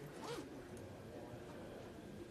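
Low murmur of a crowded hearing room, with one short rasping burst near the start.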